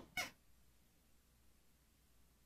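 Near silence: a pause in the talk, with one brief faint hiss just after the start.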